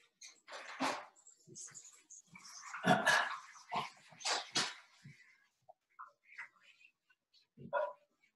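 Whiteboard eraser wiping across the board in a series of irregular strokes, with a few louder swipes about a second in, around three seconds in and between four and five seconds in.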